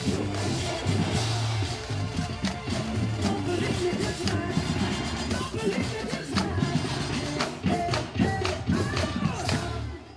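Drum line of snare and bass drums playing along with amplified pop music that has a bass line and a sung vocal, in a driving beat.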